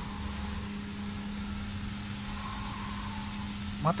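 A steady low hum over even outdoor background noise.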